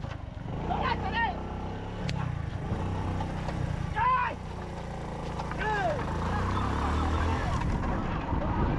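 Motorcycle engine running at low speed, its revs swelling and easing twice, with several loud rising-and-falling shouts from people over it.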